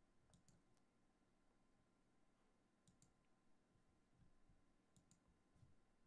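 Near silence with faint computer mouse clicks in three clusters about two seconds apart, mostly in quick pairs.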